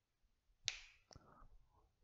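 Near silence broken by a sharp click about two-thirds of a second in, then a fainter click about half a second later.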